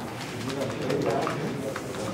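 A bird cooing, like a pigeon, over low background voices, with a few light clicks.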